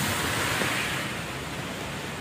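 Heavy downpour: a steady hiss of rain falling on an open umbrella overhead and on the wet street, a little quieter in the second half.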